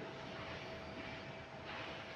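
Faint steady background noise with a thin, steady hum running through it.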